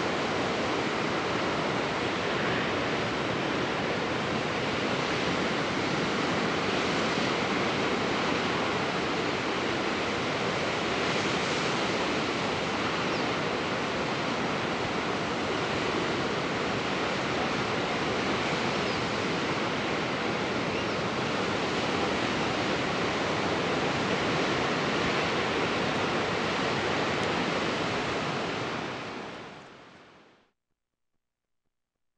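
Steady ocean surf washing continuously against the shore, with no breaks or single splashes standing out; it fades out near the end.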